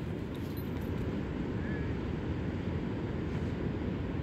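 A small dog digging in loose beach sand with her front paws, under a steady low rush of surf and wind.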